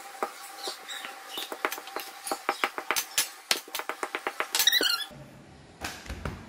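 Hands pressing and patting dough flat on a smooth countertop: a run of quick, irregular taps and clicks, densest in the middle, over a faint steady tone, stopping about five seconds in.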